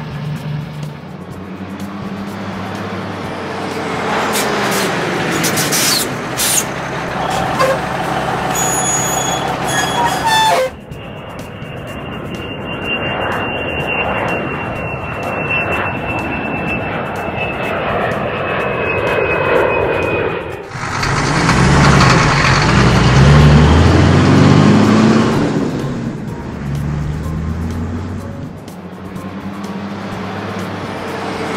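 Cartoon sound effects of a heavy truck engine running as the tanker truck drives, mixed with background music. The sound changes abruptly twice, and the loudest stretch comes about two-thirds of the way through.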